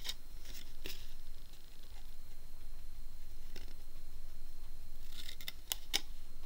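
Small pointed craft scissors snipping through cardstock: a few separate snips, then several quick ones near the end.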